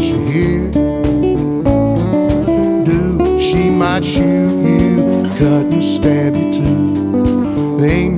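Instrumental break in a country blues song: guitars picking and strumming over low bass notes, with no singing.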